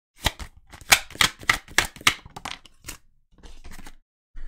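Tarot cards being shuffled and handled by hand: a quick, irregular run of crisp card flicks and snaps for about three seconds, dying away near the end.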